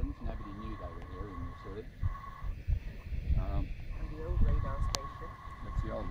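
Low, indistinct voices talking over wind rumbling on the microphone, with a single sharp click about five seconds in.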